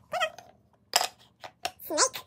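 Wooden puzzle pieces clicking and knocking against a wooden peg puzzle board, a few separate clicks, with two short high-pitched voice-like sounds, one near the start and one near the end.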